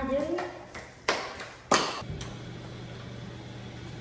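A brief rising hum of a voice, then two sharp knocks about half a second apart as things are handled in a kitchen, followed by a steady low hum.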